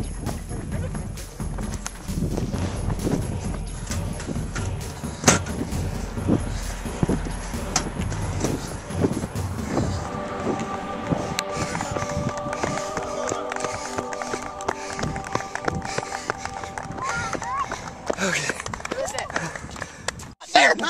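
Outdoor ambience with wind rumble on the microphone, running footsteps and indistinct voices. About halfway through, a sustained chord of background music comes in and holds for several seconds.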